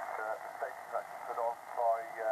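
A single-sideband voice received on the 40-metre band and coming through the Xiegu X108G HF transceiver's speaker: thin, narrow-band speech over a steady hiss of band noise.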